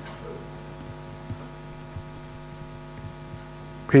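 Steady electrical mains hum: one unchanging buzz with a stack of even overtones, with a couple of faint ticks. A man's voice starts right at the end.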